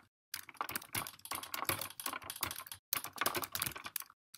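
Typing on a computer keyboard: a fast, irregular run of key clicks, broken by a couple of brief pauses.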